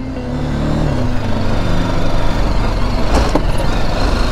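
Motorcycle engine running as the bike rides over a rough dirt track, with wind and ride noise. The engine note rises and falls in the first second, and there is a brief knock about three seconds in.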